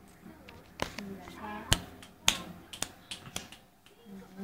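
About five sharp clicks or taps at uneven intervals, the loudest two in the middle, with a child's short high-pitched vocal sound between them.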